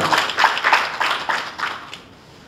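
Audience applauding, a spell of clapping that dies away near the end.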